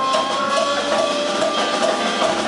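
A live jazz band playing: electric guitars over congas and drum kit, with a long held high note over a repeated short figure.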